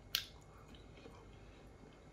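One crisp bite into a piece of Cadbury milk chocolate with peanut caramel and crispy rice, right at the start, then faint chewing.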